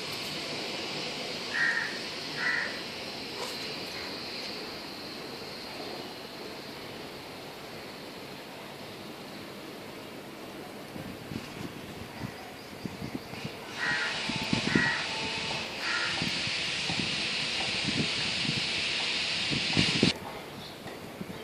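A bird giving short calls, two about two seconds in and three more close together around fourteen to sixteen seconds, over a steady high background hiss.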